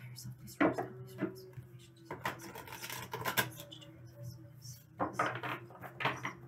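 A deck of tarot cards being shuffled by hand: short bursts of card edges clattering together. The longest run comes a little after two seconds in, and another near the end.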